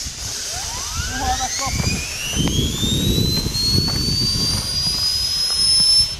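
A high whine rising steadily in pitch over several seconds, like a jet turbine spooling up, over a rushing noise. It levels off near the top and cuts off suddenly at the end.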